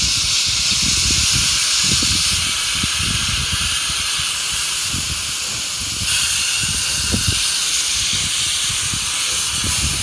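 Steam locomotive starting away with its train, steam hissing steadily from the open cylinder drain cocks, over an uneven low rumble.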